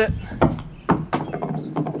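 Golf ball bouncing on a wooden deck after coming back off a practice net: a few sharp, separate knocks, about half a second in, around one second, and again near the end.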